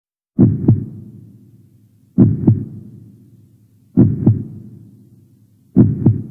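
Heartbeat sound effect: four slow lub-dub double thumps, a little under two seconds apart, each trailing off slowly.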